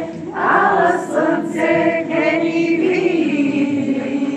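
A group of men's and women's voices singing together without instruments, holding long notes.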